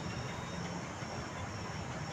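Steady low background hum with a faint high, thin whine above it; no distinct event.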